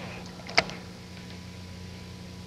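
Electric trolling motor running with a steady low hum, and one short sharp tick about half a second in.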